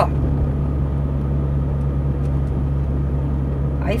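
Steady engine hum and road noise inside a moving car's cabin, a low, even drone.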